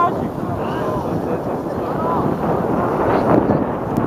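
Wind buffeting the microphone with a loud, rough rumble, with faint distant voices calling out on the pitch.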